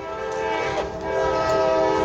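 Train horn sounding a long, steady chord of several tones, growing louder over the first second or so and holding loud.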